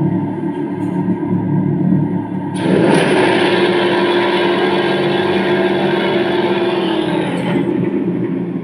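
Zebronics Zeb-Action portable Bluetooth speaker playing a loud, bass-heavy music track streamed from a phone. About two and a half seconds in, a louder, fuller section with much more treble kicks in, then eases off near the end.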